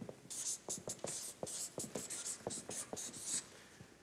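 Marker pen writing on a large paper pad: a run of short strokes, a dozen or so in about three seconds, with small taps as the pen lifts and lands, as a name is printed in capitals.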